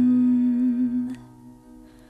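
Song: a woman's sung note held at the end of a verse line, with a slight vibrato, dying away about a second in. Soft, sustained instrumental accompaniment carries on underneath.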